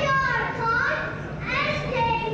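Young children singing, high voices holding long notes that slide up and down in pitch.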